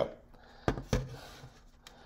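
Two dull knocks about a quarter of a second apart, about two-thirds of a second in, from hands or arm bumping the work surface while handling the putty.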